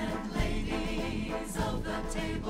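Devotional choral music: a choir singing sustained notes over a low accompaniment.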